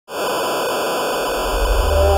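Loud, steady TV-static hiss that cuts in abruptly. About one and a half seconds in, a low bass note of intro music swells in under it.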